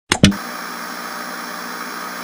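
Two short, loud glitch bursts right at the start, then a steady hiss of analog TV static.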